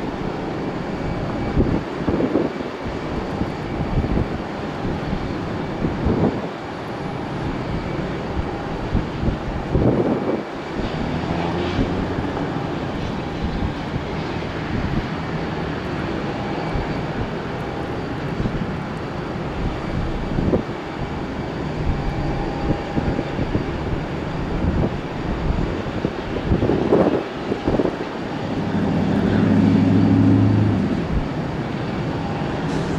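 Boeing 767-300 freighter's jet engines on final approach: a steady rumble that swells near the end as the plane nears the runway, with irregular low thumps throughout.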